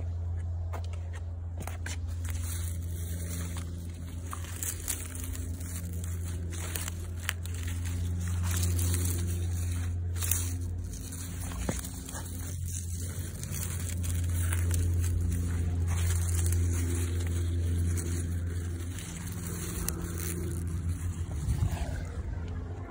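A steady low engine-like drone that swells and eases, with crisp crackling rustles of radish leaves being brushed and handled; the leaves sound almost like plastic.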